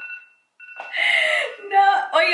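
Timer alarm ringing with two steady high tones that cut out for a moment just under half a second in, then carry on, as the countdown runs out; loud laughter over it from about the middle on.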